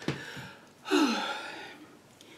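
A woman's breathy, voiced sigh about a second in, falling in pitch and trailing off.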